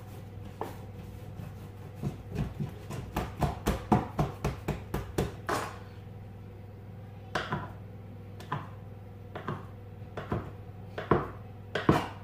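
A quick run of about a dozen light knocks as bread dough is worked on a hard kitchen worktop. Then a kitchen knife cuts a log of dough into roll-sized pieces, knocking on the worktop about once a second.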